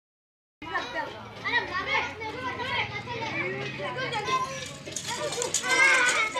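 Several boys' voices shouting and calling out over one another during a street kabaddi game, starting suddenly about half a second in.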